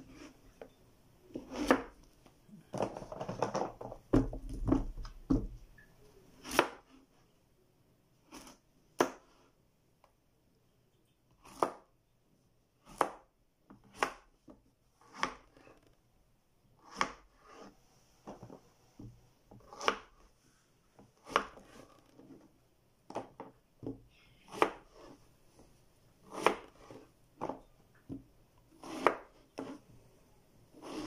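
Kitchen knife cutting through a peeled gourd, each cut ending in a sharp tap of the blade on the cutting board. The cuts come one at a time, irregularly, about every one to two seconds, with some rustling as the pieces are handled early on.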